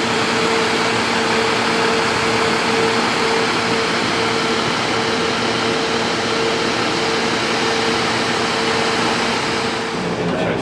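Parked Snap-on tool truck running, a steady mechanical hum over an even rushing noise that holds constant throughout.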